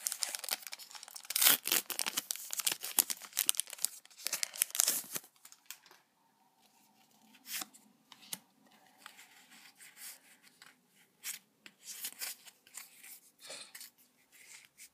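A Pokémon trading-card booster pack's foil wrapper being torn open and crinkled, dense crackling for about five seconds. After that come quieter, scattered clicks and rustles as the stack of cards is handled.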